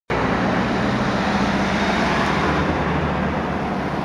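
City street traffic noise, with a nearby engine running at idle; its low hum fades out about three quarters of the way through.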